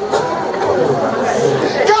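Many voices of a congregation talking over one another, echoing in a large hall.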